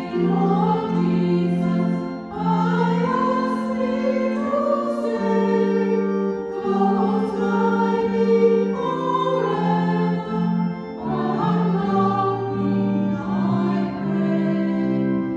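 A small choir singing with organ accompaniment, the notes changing about once a second.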